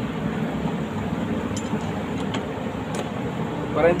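Steady background hum with a few faint light clicks as a metal bar clamp is fitted to the board. The router is not running.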